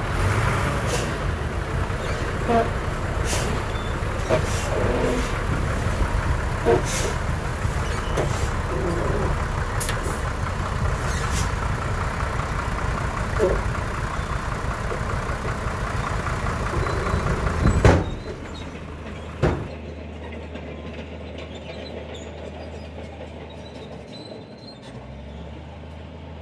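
Komatsu D68E bulldozer running under load while it pushes soil, with repeated clanks from its tracks and blade. About two-thirds of the way through, the sound drops abruptly to a much quieter low steady hum.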